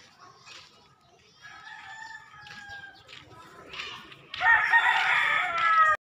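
Roosters crowing: a fainter crow about a second and a half in, then a loud, close crow from about four seconds in, its pitch falling toward the end.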